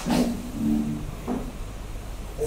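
A man speaking in short, broken phrases into a bank of microphones, with a sharp click at the very start.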